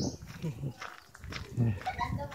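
A person's voice in short, broken snatches, with a few faint clicks between them.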